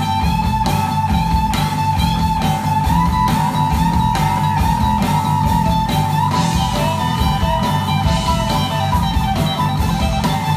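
Live blues-rock band playing an instrumental passage: a held, slightly bending electric guitar lead over acoustic guitar, bass and a steady drum beat.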